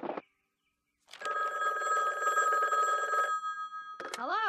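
Old-fashioned telephone bell ringing in one long ring of about two seconds, starting about a second in.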